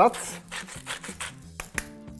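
Hand-twisted salt mill grinding coarse crystal salt: a run of quick, fine crackling rasps, ending in a couple of sharper clicks.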